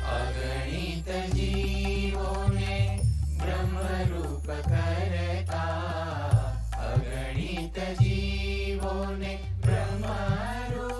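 A group of boys' and men's voices singing a Gujarati devotional kirtan in unison, in long flowing phrases over a low sustained accompaniment, with a few sharp percussive hits.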